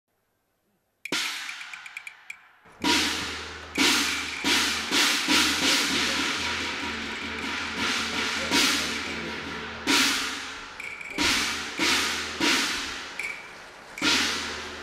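Cantonese opera percussion (drum, gongs and cymbals) playing an opening pattern. After about a second of silence comes a single struck hit, then irregularly spaced strokes from about three seconds in, each ringing and fading away.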